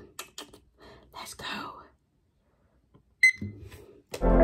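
Faint clicks and soft handling sounds, then about three seconds in a single short, high electronic beep: the five-minute challenge timer starting.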